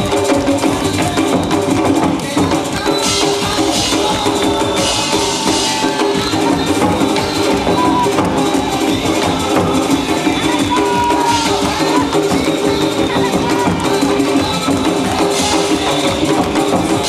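A pair of large Korean barrel drums (buk) struck with sticks in a fast, dense rhythm, played over continuous loud backing music.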